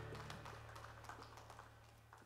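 A live band's final chord dying away, a low held note lingering as it fades out, with a few faint ticks.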